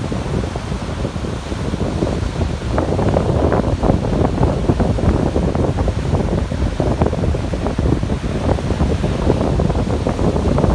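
Ocean surf breaking and washing up over sand and rocks, with wind buffeting the microphone. The rush grows louder about three seconds in.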